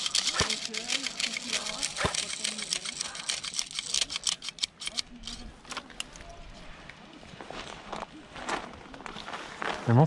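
Rustling and crackling of dry leaves and handled kit, with many small clicks, busiest in the first half; faint low voices murmur in the first few seconds.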